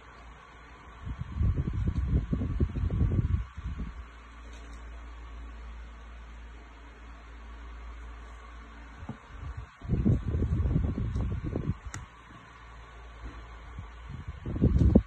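A steady mechanical hum, like a running fan, throughout. Two stretches of rough low rumbling, each about two seconds long, come in about a second in and again around the ninth second.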